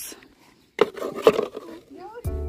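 Plastic sand toys knocking twice, about half a second apart, with rough scraping between the knocks.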